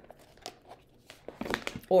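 A deck of oracle cards being handled and slid out of its cardboard box: light rustles and small taps, a few more of them in the second half.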